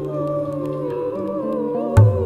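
A woman's voice sings a slow, wavering melody that glides between notes over a low steady drone. A single sharp, deep tabla stroke lands right at the end.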